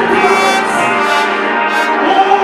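Loud live gospel music: sustained brass-sounding chords with a man singing over them through a microphone.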